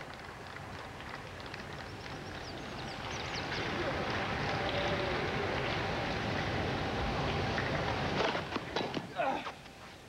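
Crowd noise around a grass tennis court, growing louder over several seconds. About eight seconds in come the sharp pops of a racket striking a serve, followed by a few more knocks.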